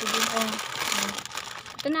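Plastic sachet packaging crinkling as a bundle of packets is lifted and handled, with a faint voice now and then.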